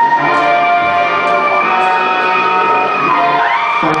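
Live band music, amplified instruments holding long sustained chords that change twice.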